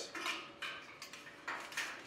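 Spring steel bracket of a steel 4-inch square junction box being pushed onto a steel stud: several light metallic clicks and scrapes as it slides and seats.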